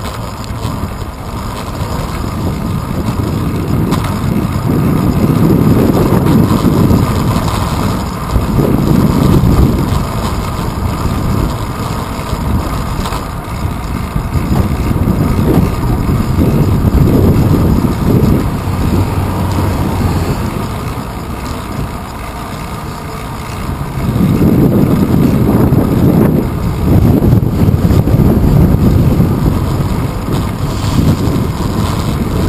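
Wind rumbling over the microphone of a handlebar-mounted GoPro Hero 2 while cycling through city streets, in slow irregular swells, over a steady hum of road and traffic noise.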